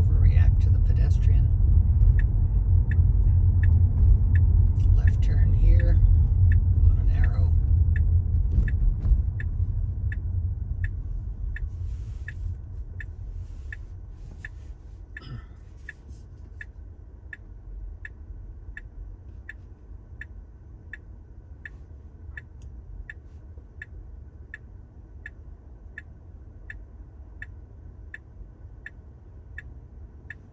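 Car cabin road and tyre rumble fading away over the first ten seconds or so as the Tesla slows to a stop. Turn signal ticking steadily, about three ticks every two seconds, from about two seconds in.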